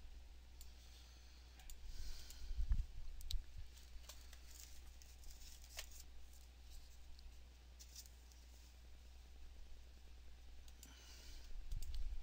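A few scattered computer mouse clicks, faint, over a steady low hum.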